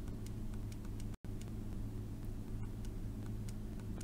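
Buttons of a TI-84 Plus Silver Edition graphing calculator clicking softly a few times a second as the arrow key is pressed again and again to trace along a graph, over a steady low hum. The sound cuts out completely for a moment just over a second in.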